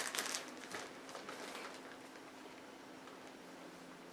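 Faint handling sounds of Play-Doh being pulled off a plastic egg: a few soft rustles and clicks in the first second, then quiet room tone with a faint steady hum.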